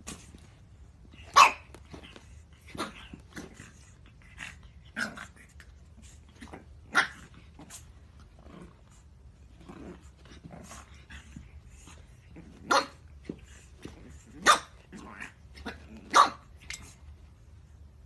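Pug puppy barking in short, sharp yaps at its own reflection in a mirror, with about five louder barks among quieter ones spread through.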